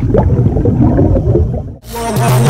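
Underwater bubbling and gurgling sound effect over a deep rumble. It cuts off suddenly just before the end.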